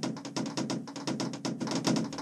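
Rapid clicking of fridge magnets snapping one after another onto the van's steel door panel, more than ten clicks a second, as in sped-up footage.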